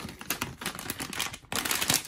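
A crinkly plastic blind bag crackling as it is handled and torn open, a rapid run of crackles that gets denser near the end.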